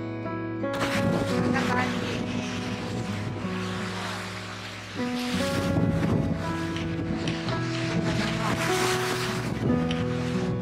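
Gentle piano background music over gusting wind buffeting the microphone and surf washing on a rocky shore; the wind and surf come in about a second in.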